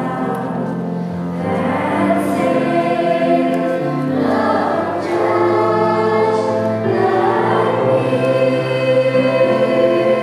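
A children's choir singing, with long held notes.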